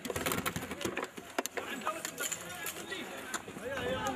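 Several men's voices shouting and calling over one another outdoors, with scattered sharp knocks or cracks, most of them in the first second and a half.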